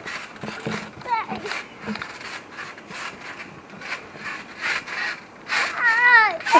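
Children bouncing on a trampoline: short thuds from the mat about every 0.6 s, with high gliding squeals and laughter that get louder near the end.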